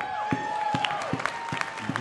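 Scattered clapping from an audience starting up over a long held final note of swing dance music, which fades out near the end.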